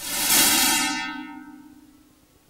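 Cartoon magic sound effect for something vanishing: a bright, shimmering electronic sound made of several steady tones that swells at once and fades away over about two seconds.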